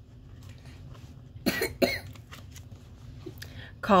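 A person coughs twice in quick succession, short and sharp, about a second and a half in.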